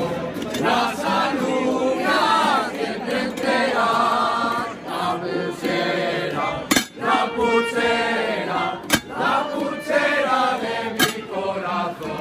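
A group of people singing together in chorus. A few sharp knocks cut through, about two seconds apart, in the second half.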